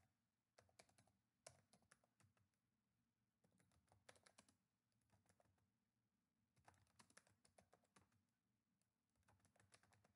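Very faint typing on a computer keyboard: quick runs of keystrokes with short pauses between them.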